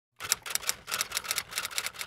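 Typewriter sound effect: a fast, uneven run of sharp key clacks.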